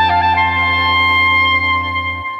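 Oberkrainer-style folk band with clarinet, accordion and brass playing the slow opening of a tune. A few melody notes shift at the start, then a long chord is held over a steady bass and eases off slightly near the end.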